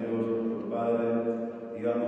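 A Catholic priest chanting the liturgy in Spanish: one man's voice holding long notes on a nearly level pitch, with short breaks between phrases.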